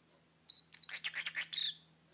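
Parrotlet vocalizing: a few sharp, high chirps about half a second in, followed by about a second of rapid chattering.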